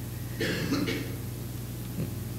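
A person's brief cough, about half a second in, lasting well under a second.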